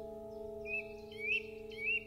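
Slow piano music holding a chord that fades gently. Over it a small bird chirps three times, short rising chirps about half a second apart starting about a third of the way in.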